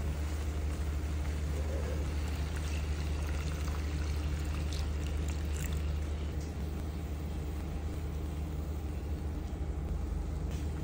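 Spice paste sizzling in a hot frying pan as it is stirred with a wooden spatula, then water poured into the pan from a jug about halfway through, after which the sizzle softens. A steady low rumble runs underneath.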